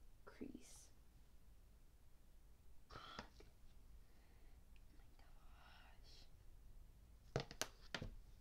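Near silence, with a brief exclamation at the start, faint whispering in the middle, and a quick cluster of sharp clicks near the end.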